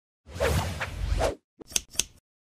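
Logo-animation sound effect: a whoosh with a low rumble lasting about a second, followed by a few quick sharp swishes near the end.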